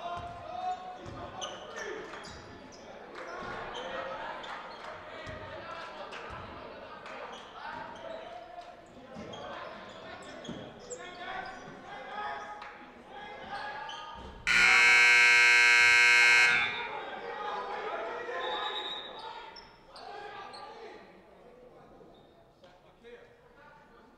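Basketball being dribbled on a gym floor amid indistinct players' and spectators' voices in an echoing hall. About two-thirds of the way through, a scoreboard buzzer sounds for about two seconds, the loudest sound.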